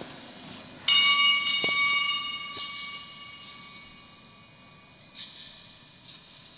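Altar bell rung at the elevation of the chalice: a loud ring about a second in that dies away slowly over a few seconds, then a softer second ring near the end.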